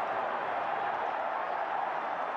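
Large stadium crowd noise, a steady even din of cheering from the stands.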